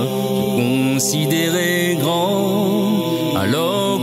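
A cappella singing of a French Islamic chant (anachid): layered voices holding sustained, gently wavering notes that change about once a second, with no instruments.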